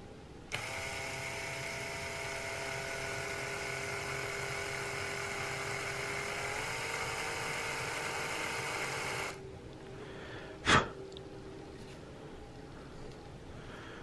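Small cordless drill running steadily as it gently bores a pin hole through the wall of a cow-horn powder horn near its base plug. Its pitch steps up slightly a little past halfway, and it stops about two-thirds of the way in. A single sharp click follows.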